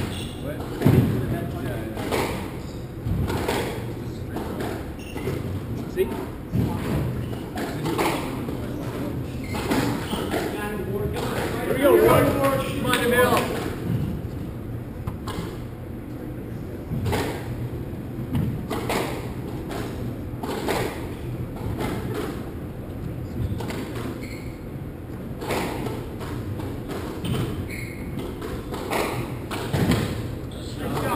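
Squash rally: a run of sharp, irregular knocks as the ball is struck by the racquets and hits the court walls.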